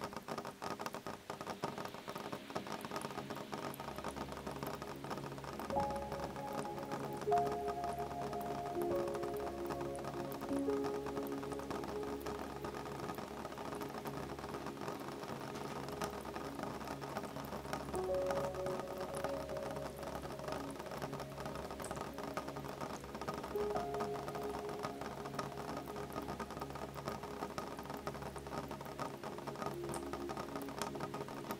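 Gentle rain pattering steadily on a window, with soft, calm music of slow, long-held notes coming in about six seconds in.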